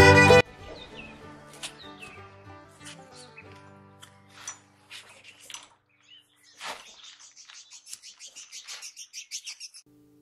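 Loud music cuts off abruptly half a second in. Faint bird chirps follow, ending in a quick, even run of repeated chirps, about six a second.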